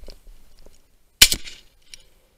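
A single shotgun shot fired at a woodcock about a second in: one sharp crack with a short fading tail.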